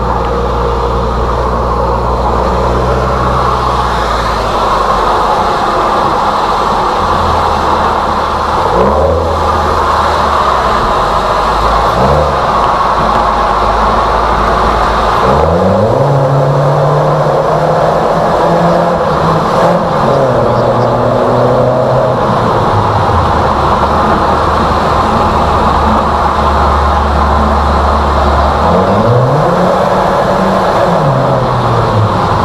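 Exhaust of a Toyota Alphard minivan with its center muffler replaced by a straight pipe, running loud and echoing in a road tunnel. The engine note climbs in pitch several times as the driver accelerates.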